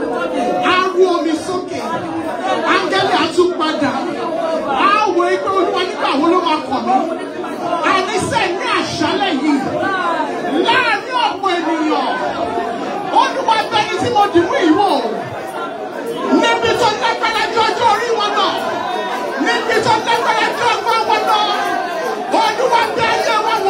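A congregation praying aloud all at once: many overlapping voices with no single word standing out, going on steadily throughout.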